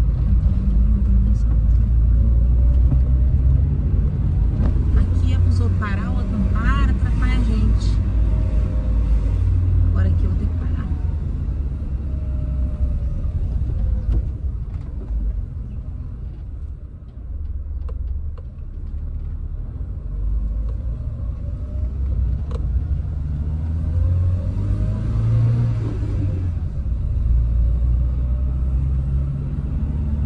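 Car engine and road noise heard from inside the cabin while driving: a steady low rumble that dips quieter around the middle and builds again. A few brief high chirps come about six to eight seconds in.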